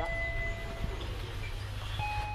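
Electronic shop-door chime at a 7-Eleven: the lower note of a descending two-note ding-dong, held for about a second, over a steady low rumble.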